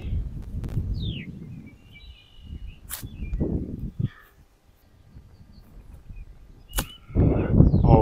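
Wind rumbling on the microphone, with a bird chirping about a second in. Two sharp clicks come about three and seven seconds in; the later one is a golf club striking a ball.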